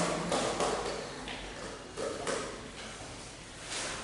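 A boy speaking quietly and haltingly, a few soft words or sounds in short bursts with pauses between.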